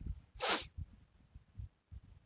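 A person's single short, sharp breath noise through the nose, about half a second in, a hissing burst with no voice in it.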